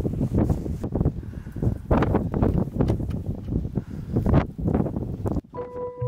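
Gusty wind buffeting the microphone outdoors, an uneven rumbling rush that swells and drops. It cuts off suddenly near the end as music with sustained tones and a bass line begins.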